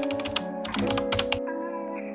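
Keyboard-typing sound effect, a quick run of key clicks that stops about a second and a half in, over soft intro music with held chords.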